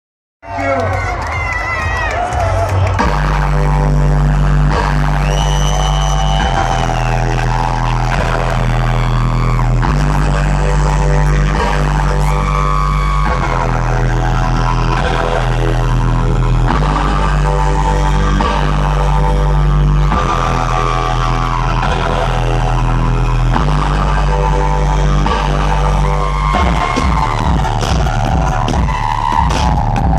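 Live electronic bass music played loud over a festival sound system, heard from the crowd: heavy sustained bass notes that change every couple of seconds under a melodic line. A fast pulsing beat comes in near the end.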